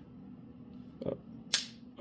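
A sharp single click from a Springfield XD-S Mod.2 .45 ACP pistol being handled during a dry trigger-pull check, with a softer tick about a second in. The trigger will not break because the manual safety is still engaged.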